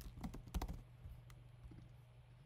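Computer keyboard being typed on: a quick run of keystrokes in the first second, then a few fainter scattered taps, over a steady low hum.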